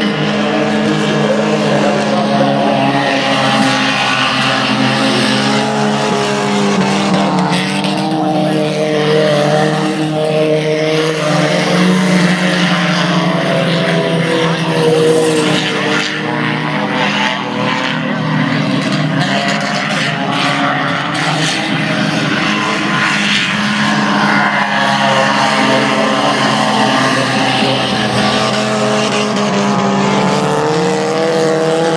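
Several junior sedan race cars' engines running at speed as the cars lap, the engine notes wavering up and down continuously.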